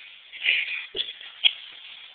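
Rustling and handling noise, with three sharp clicks or knocks spaced about half a second apart.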